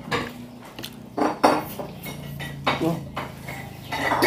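A few short clinks and knocks of a plate and tableware on a table as someone eats rice and fried fish by hand, over a low steady hum.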